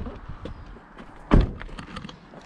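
A car door shut with one loud thunk about a second and a half in, with light rustling and small clicks around it.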